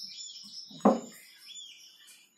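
A small bird singing: a fast, high warbling trill, with short chirps around it.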